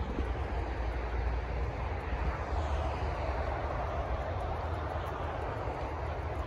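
Steady outdoor background noise with a low rumble underneath, holding at an even level throughout.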